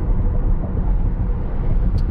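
Steady tyre and road rumble of a Tesla Model S Plaid on 21-inch wheels, heard inside the cabin while cruising at about 48 mph.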